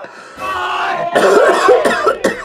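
A man gagging and coughing harshly, a strained retching sound that grows louder about a second in.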